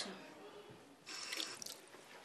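Tap water running into a washbasin while hands are washed under the stream, splashing louder about a second in.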